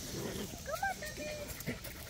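Puppies giving a few short, high whimpers and yips.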